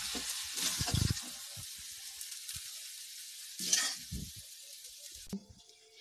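Cooked greens sizzling in a dark metal kadhai while a spatula stirs and scrapes them. The sizzle fades as the pan cools with the gas just switched off, and there is a louder scrape about three and a half seconds in. The sound cuts off shortly before the end.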